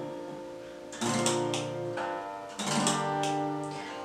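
Acoustic guitar with a capo fitted, strummed twice: one chord about a second in and another at about two and a half seconds, each left to ring out.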